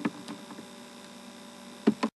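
Steady electrical mains hum in the recording, with a few brief clicks; the loudest is a short knock near the end.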